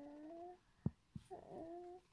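A baby's drawn-out cooing, two long vocal notes, each gliding slowly upward in pitch. The first fades about half a second in, and the second starts just past the middle. There is a single short tap between them.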